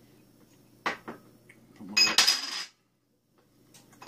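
Small spoon and little serving bowl clinking: one light click about a second in, then a louder ringing clatter around two seconds in that stops abruptly.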